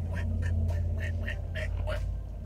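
Steady low rumble of a car's engine and road noise heard inside the cabin, with a quick string of short, soft sounds over it, several a second.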